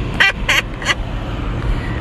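A woman laughing in three or four short bursts in the first second, over the steady low rumble of a car's cabin.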